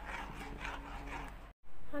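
A spoon stirring and scraping around a steel pan of dissolving strawberry jelly, a soft steady rubbing sound that cuts off abruptly about one and a half seconds in.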